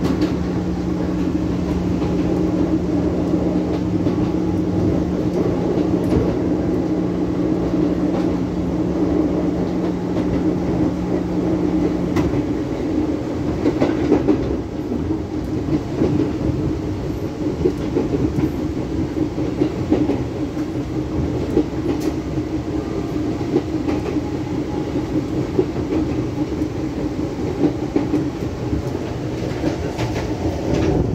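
Inside a Fujikyu Railway electric train running along the line: the steady rumble of wheels on rail, with a few sharp clacks over the track. A steady low hum sounds for the first twelve seconds or so, then cuts off suddenly while the running noise carries on.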